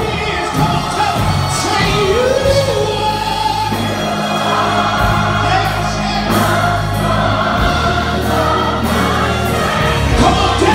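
Gospel choir singing in harmony with a live church band of keyboards and drums, the voices and bass holding long sustained chords.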